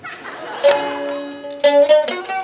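Mandolin strummed: a chord a little past half a second in that rings on, then another chord about a second later.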